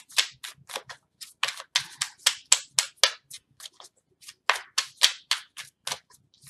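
Tarot deck being shuffled by hand: a rapid, uneven run of sharp card snaps, about four a second, with a short pause a little past the middle.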